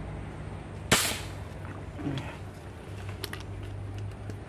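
A single air rifle shot about a second in: one sharp crack with a brief ring-out, fired at a fish in the water.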